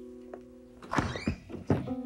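Soft piano notes fade out. About a second in come a quick run of thuds and knocks as a wooden toilet-stall door is forced open.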